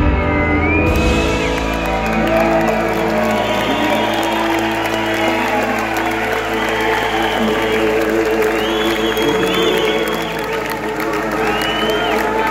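Live rock band ending a song: the drums and cymbals stop about a second in and a Stratocaster-style electric guitar holds the final chord, with bends and sliding notes, while the crowd cheers and whoops.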